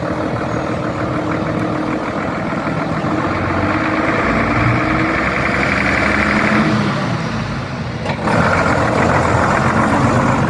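Vintage half-cab single-deck bus engine running as the bus pulls toward and past at close range. About eight seconds in, the sound jumps suddenly louder and brighter.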